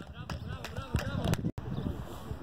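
Young players and coaches shouting and calling across a football pitch, with a few sharp knocks among the voices. The sound drops out completely for a moment about one and a half seconds in.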